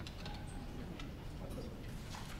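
Quiet room tone of a meeting chamber with a low hum and a couple of faint clicks.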